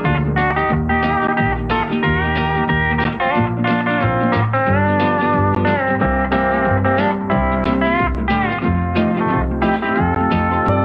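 Steel guitar playing an instrumental solo in a country song, its notes gliding up and down under the steel bar, over a band's bass accompaniment.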